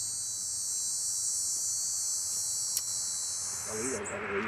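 Cicadas buzzing in the trees: a steady, high-pitched chorus that stops abruptly right at the end.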